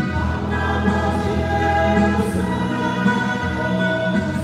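Small church choir of men and women singing together, holding long sustained notes.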